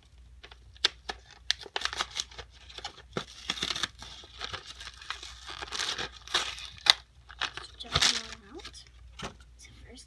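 A plastic packet of small children's stamps being crinkled and torn open by hand: irregular rustling with many sharp snaps of plastic, the loudest about seven and eight seconds in.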